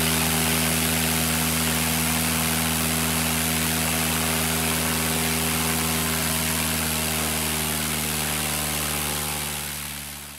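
Piper PA-18 Super Cub's four-cylinder Lycoming engine, fitted with a Power Flow Leading Edge tuned exhaust, running steadily on the ground with the propeller turning. The sound fades out over the last couple of seconds.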